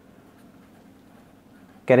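Faint scratching of a felt-tip marker writing on paper, then a man's voice starts near the end.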